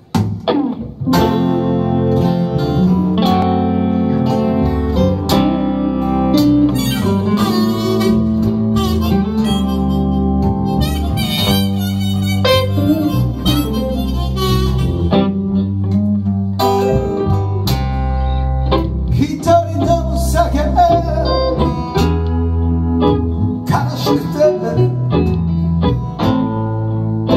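A small blues band playing live: electric bass, acoustic guitar and electric guitar, with a held lead melody over them, coming in about a second in. An instrumental intro with no singing.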